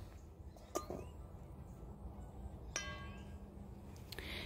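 Quiet background with a small click, then a short, sharp clink that rings briefly about three seconds in.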